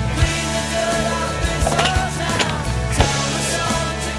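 Skateboard wheels rolling on a hard court surface, with a few sharp clacks of the board, under a rock music soundtrack.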